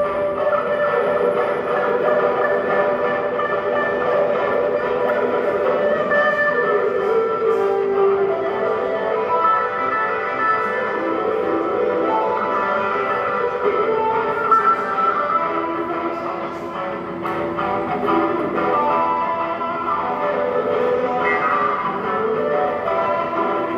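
Cherman "India" electric guitar played live through a small amp, layered over its own repeating phrases from a Nux Core loop pedal: several sustained melodic lines sounding at once.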